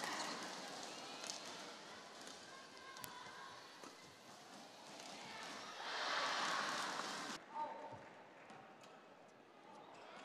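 Badminton rally in an arena: sharp racquet strikes on the shuttlecock, one clear hit about three seconds in and several lighter ones later, over a steady crowd hum, which swells briefly about six seconds in.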